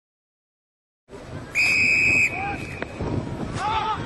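About a second of silence, then live match sound cuts in with a referee's whistle blown once, a single steady blast of under a second and the loudest sound. Shouts from players and onlookers follow over the field noise.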